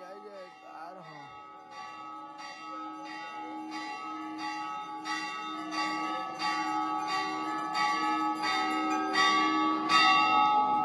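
Temple bells rung rapidly during aarti, about three strikes a second, each leaving a sustained metallic ring. The ringing grows steadily louder.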